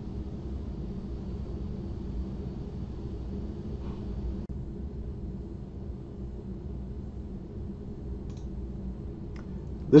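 Steady low electrical hum of room tone, with a faint high whine that cuts off about four and a half seconds in. A few faint clicks, one about four seconds in and two near the end.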